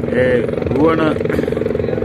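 Helicopter running nearby: a steady, unbroken engine drone with an even hum.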